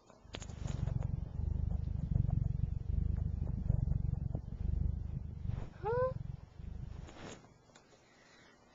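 Domestic cat purring, picked up with the camera pressed into its fur: a low, close rumble in stretches a second or so long with short breaks at each breath.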